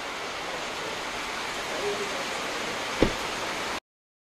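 Heavy rain falling steadily on a car's roof and windscreen, heard from inside the cabin, with a single sharp knock about three seconds in. The sound cuts off suddenly just before the end.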